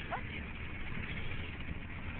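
Steady road and engine noise inside a moving car, a low rumble with hiss. A brief falling squeak sounds just after the start.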